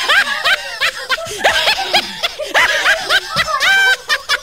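High-pitched laughter in rapid repeated bursts, rising and falling in pitch, ending on a held squealing note.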